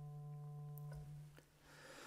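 A single faint instrumental note held as the starting pitch for the chant, fading out about a second in.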